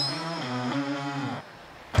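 Edited-in TV sound effects: a bright sparkle 'ting' with a high ringing tail, followed by a short tune of held notes that stops about a second and a half in.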